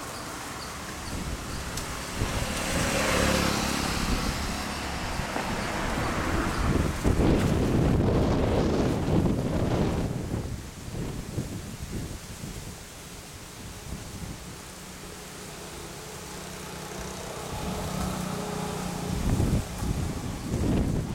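Road traffic passing: cars' tyre and engine noise swells over several seconds, is loudest just before the middle, then drops away about halfway through.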